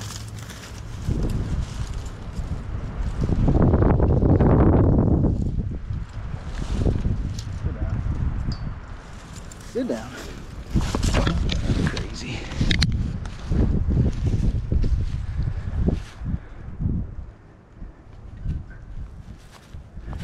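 Crackling and rustling of dry leaves, twigs and brush as a person moves through undergrowth, with short snaps and scuffs, a louder rush of noise about four seconds in, and a sharp snap a little before the two-thirds mark.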